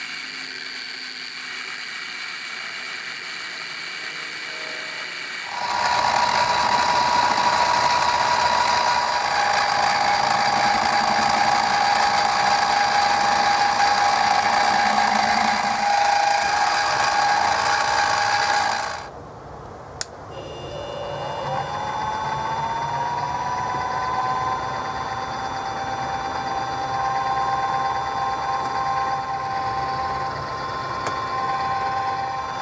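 Milling machine spindle turning a drill bit, cross-drilling through the pulley hub and shaft for a pin. It runs louder with a steady whine from about six seconds in while the bit cuts. Near twenty seconds it drops away with a click, then spins back up, its whine rising and settling into a steady run.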